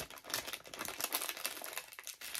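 Packaging crinkling and rustling in quick irregular crackles as it is handled and opened.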